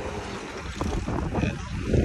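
Low, noisy outdoor rumble with a few faint knocks.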